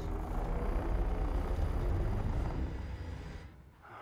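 Deep, low rumble from a film soundtrack, the sound of the giant machine stirring, holding steady and then fading out shortly before the end.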